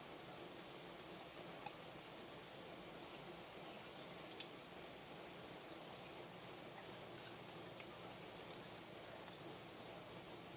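Near silence: steady background hiss with a few faint, scattered small clicks.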